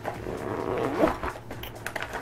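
Plastic sandwich bag crinkling and a soft insulated lunch box being handled as the bag is lifted out, with a short rising pitched sound about a second in.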